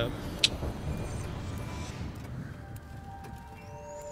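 Film-trailer soundtrack between lines: a sharp hit about half a second in, a low rumble, then held music notes and a thin high tone rising near the end as the title card comes up.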